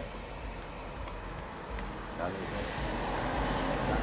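A car passing on the road, its engine and tyre noise swelling over the last second and a half. Underneath, a steady low rumble and a few faint, high insect chirps.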